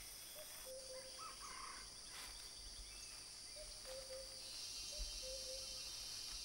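Faint tropical forest ambience: a steady high insect drone, with three short, low, level calls, one early and two close together in the second half.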